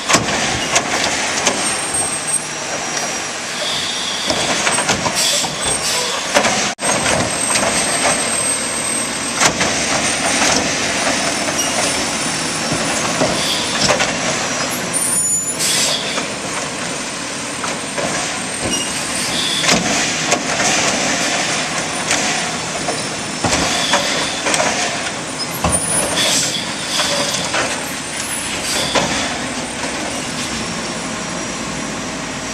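Automated side-loader garbage truck working at the curb: its diesel engine runs under load while the hydraulic arm lifts and dumps trash carts, with a few short air-brake hisses.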